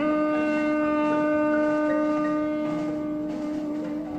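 Jazz saxophone holding one long steady note that slowly fades.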